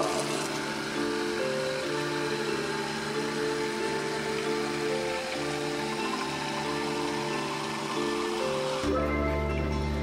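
Background music with a repeating, stepping melody over a steady bass. Under it, water runs from a faucet into a glass jar and stops about nine seconds in.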